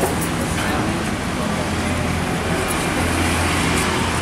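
Road traffic noise with a steady low engine hum running throughout, and voices mixed in.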